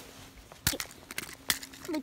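A few sharp knocks and clicks, two louder ones about a second apart, over a faint steady hum.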